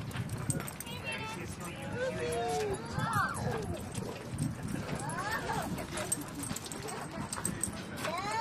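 A dog whining and vocalizing in drawn-out calls that slide up and down in pitch, a few at a time, over a constant low background murmur.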